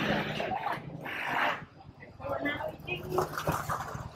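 Background chatter of people at a market stall, with two short bursts of noise in the first second and a half.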